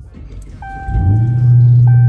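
Dodge Challenger SRT Hellcat Redeye's supercharged 6.2-litre Hemi V8 being started: a low rumble of cranking, then the engine catches about a second in and settles into a steady, loud high idle. A steady thin tone sounds alongside.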